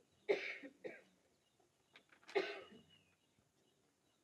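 A man coughing and clearing his throat into a handheld microphone: a short cough near the start with a smaller one right after, then another about two seconds later.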